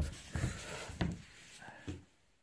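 A few short knocks and rubbing handling noises, the sharpest a click about a second in.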